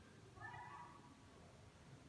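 Near silence with one faint, brief high-pitched cry about half a second in, over a low steady hum.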